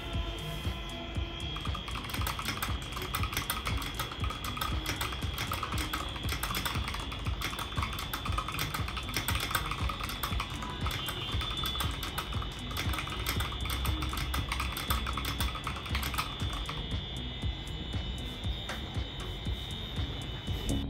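Typing on a Keychron K6 mechanical keyboard with Gateron Milky Yellow linear switches: a steady, fast run of keystrokes.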